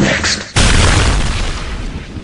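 A sudden loud boom about half a second in, with a deep rumble that fades over the next second and a half.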